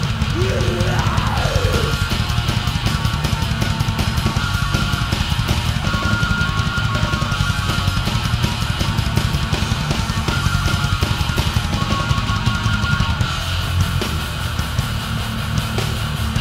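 Heavy metal band playing an instrumental passage: distorted electric guitars over fast, dense drumming, with pitch slides in the first couple of seconds and a high guitar melody coming in and out.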